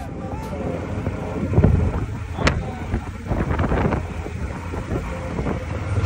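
Wind buffeting the microphone over a low road rumble, from riding in an open vehicle at speed, with the strongest gust about one and a half seconds in.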